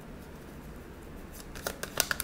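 Tarot cards handled over a wooden table: after a quiet second, a quick run of sharp flicks and snaps as cards are pulled from the deck.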